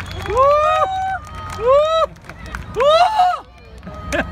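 Audience members' voices calling out three drawn-out exclamations of amazement, each rising and then falling in pitch, over the low hum of a crowd.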